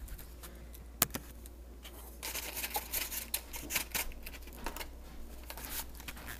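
Hands handling a plastic milk jug and its lid next to a hand-held camera: a single sharp click about a second in, then a stretch of irregular rustling and light clattering from about two seconds on.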